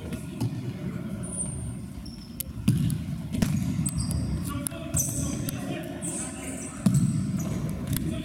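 Futsal ball being kicked and thudding on a sports-hall floor during play, several sharp hits with the loudest a little under three seconds in and again near the end, echoing in the large hall.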